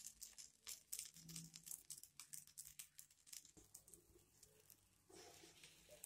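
Faint crackling sizzle of a red-rice dosa cooking on a hot tawa: a rapid scatter of tiny crackles that thins out after about three and a half seconds.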